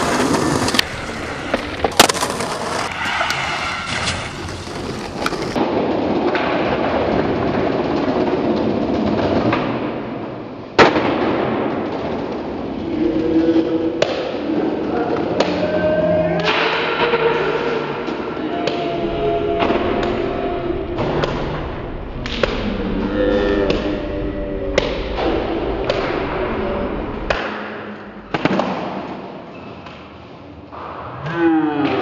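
Skateboard wheels rolling on hard ground with repeated sharp knocks of the board popping and landing, the loudest about eleven seconds in; voices come and go in the second half.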